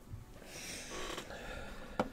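A man's heavy, breathy exhale as he stretches, lasting under a second from about half a second in. A short sharp click, the loudest moment, comes right at the end.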